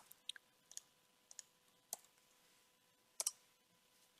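Faint, scattered clicks of a computer mouse and keyboard, about nine in all, some in quick pairs, as links are copied into a chat.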